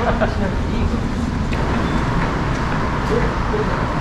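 Steady low rumble of road traffic and idling vehicles in a covered airport pickup lane, with faint voices in the first moment.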